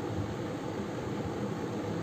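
Steady background hiss of room noise, with no other sound.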